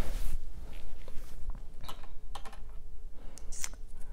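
Irregular small clicks and rustles of hands handling makeup items and clothing close to a clip-on microphone.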